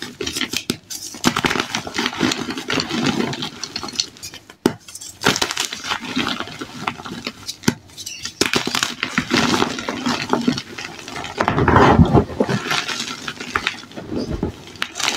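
Dyed gym chalk crushed and crumbled by hand: a dense crunching and crackling of breaking chalk and loose crumbs, in bouts with brief pauses, loudest about twelve seconds in.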